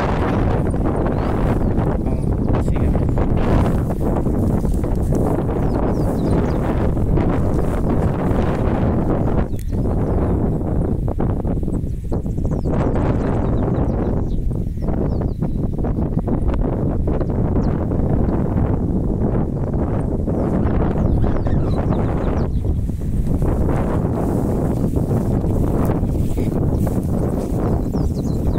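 Wind buffeting the microphone: a loud, steady rumbling noise that eases briefly a few times.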